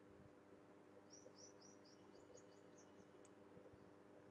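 Near silence: faint steady room hum, with a short run of faint, quick high chirps from a small bird about a second in.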